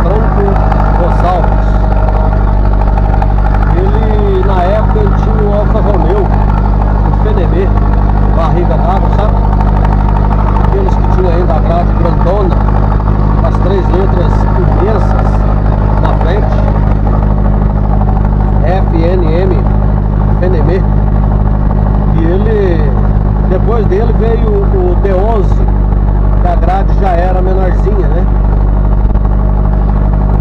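Steady low drone of a vehicle engine heard inside the cab while driving, with a man's voice talking on and off over it.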